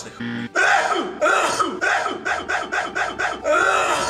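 A man's exaggerated mock crying: a drawn-out wail breaking into rapid rhythmic sobs, about five a second, then another long wail near the end.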